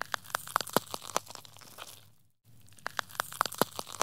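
Woodpecker pecking at tree bark: irregular, sharp taps, several a second, with a brief break a little over two seconds in.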